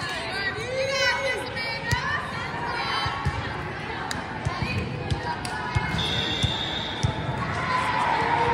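Volleyball gym between rallies: players' voices echo across the hall and a ball bounces on the floor with several short thumps. About six seconds in, a referee's whistle sounds one steady note for about a second, signalling the serve, and crowd noise starts to rise near the end.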